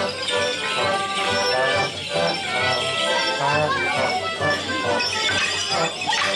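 Live folk dance tune on a squeezebox playing for Morris dancers, with the dancers' wooden sticks clacking together now and then, over crowd chatter.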